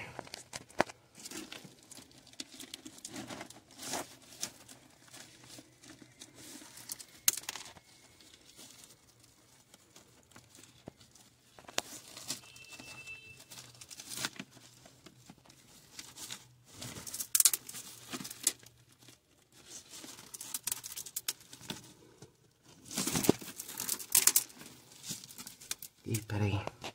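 Intermittent rustling and scraping with scattered clicks from hands working a new chrome wall tap as it is screwed into its fitting. The loudest rustles come twice, past the middle and near the end.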